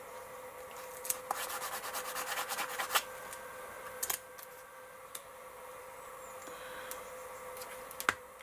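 Fingers rubbing a small paper ticket down onto a thick collaged paper page: a fast, scratchy rubbing that lasts about two seconds. About four seconds in come a couple of light knocks as a plastic bottle is picked up.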